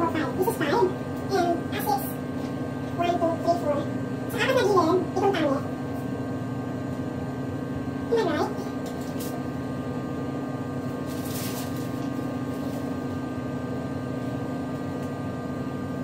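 A steady electrical hum, with a person's voice heard in short snatches during the first six seconds and once about eight seconds in.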